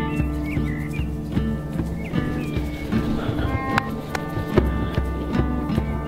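Melodica playing held reedy notes over a steady hand-drum beat, in a small acoustic group jam.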